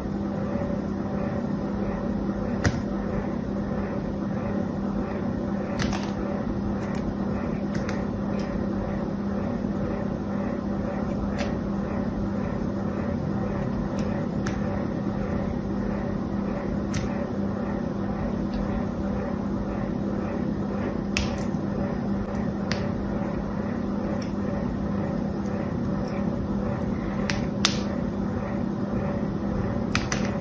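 Small knife cutting a bar of soap, with sharp clicks every few seconds as slivers snap off, over a steady low hum.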